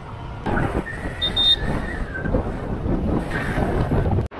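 Riding noise from a motorised two-wheeler on the move: engine, tyres and wind on the microphone as a steady rush, with a short high double beep a little over a second in.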